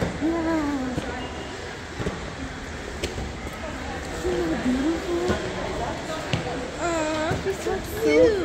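Indistinct voices talking in short spells, with a few sharp clicks scattered between them over a steady low background rumble.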